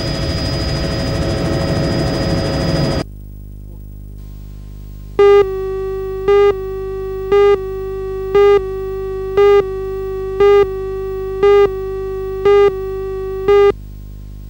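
Helicopters flying, with rotor noise and turbine whine, cut off abruptly about three seconds in. After a moment of low hum, a broadcast countdown leader begins: a steady electronic test tone with a louder beep about once a second, nine beeps in all, stopping just before the end.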